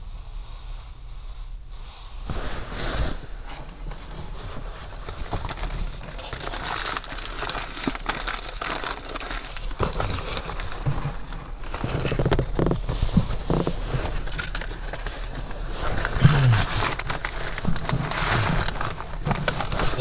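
Camouflage clothing fabric rubbing and shifting against a body-worn camera and its microphone: irregular crinkling, scraping rustles that start about two seconds in and keep on, over a steady low hum.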